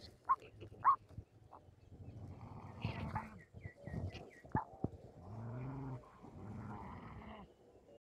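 A parrot calling: two short squawks, then a quick run of about six high chirps. Near the end come two low, drawn-out vocal sounds, each under a second.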